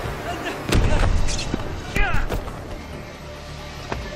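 Film soundtrack with two sharp impacts, one under a second in and another about two seconds in, with brief vocal cries and music underneath.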